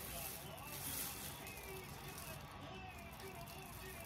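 Quiet room noise with a faint, indistinct voice in the background.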